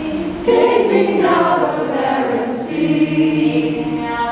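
A group of voices singing together in long, overlapping held tones that shift in pitch, swelling louder about half a second in.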